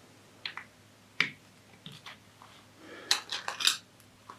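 Plastic LEGO bricks clicking and clattering as they are handled: a few separate sharp clicks, then a quick run of clicks near the end.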